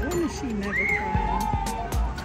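A young child crying, a high wail that rises and falls in pitch, over background music.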